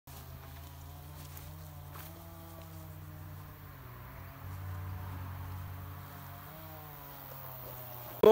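Insects buzzing in the meadow: a steady low drone with a faint wavering hum that grows louder about halfway through, then eases off.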